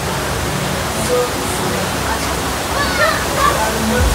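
Surf wave simulator pumping a thin sheet of water up its padded slope: a steady rushing of water. Voices call out over it about three seconds in.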